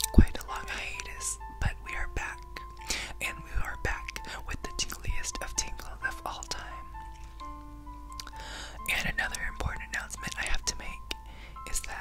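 Close-up whispering into the microphone over soft background music: a slow melody of long held notes, one at a time. Small sharp clicks come through between the whispers.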